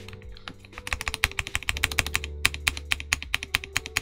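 Rapid keystrokes on a ProtoArc x RoyalAxe L75 mechanical keyboard with Gateron G Pro Yellow switches and stock stabilizers on a polycarbonate plate. They start about a second in, with a short break near the middle. The sound is muted and on the deeper end, with stabilizers that could use a bit of tuning.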